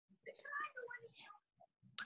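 A faint voice speaking quietly for about a second, as over a video call.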